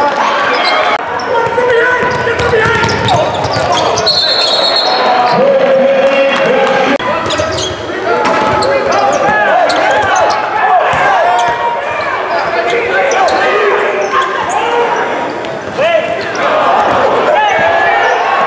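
Live basketball game sound echoing in a large, mostly empty arena: the ball bouncing on the hardwood, short squeaks and knocks of play, and players and coaches calling out.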